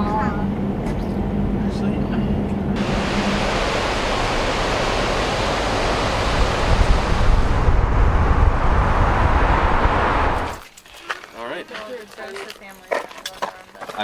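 Low steady hum inside a car, then loud steady rushing of wind and road noise from the car driving along a road, growing louder before it cuts off suddenly about ten and a half seconds in. Quieter outdoor sound with faint voices follows.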